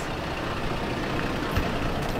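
Toyota Tacoma pickup's engine idling steadily.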